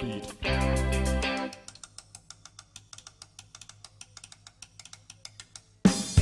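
Post-punk/hardcore rock band playing: a loud chord with guitar and bass stops about a second and a half in. A quiet, fast, regular ticking over a low steady tone follows, and the full band crashes back in loudly at the very end.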